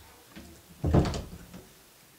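A door being closed, the loudest part about a second in.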